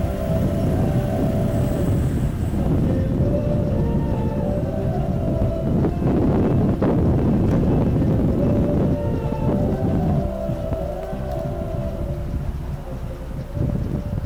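Music for the light show played loud on a car radio, faint under heavy wind buffeting the microphone. A melody recurs in short phrases through a low, dense wind rumble that is the loudest sound.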